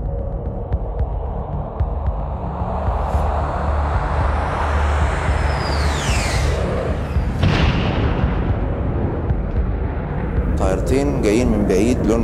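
Jet aircraft rumble swelling, with a falling whistle about six seconds in and a sharp blast about a second and a half later, as in an air strike on an airfield.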